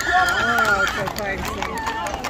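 Horses' hooves clip-clopping on an asphalt street as a mounted procession walks past. A high, wavering whinny sounds in the first second.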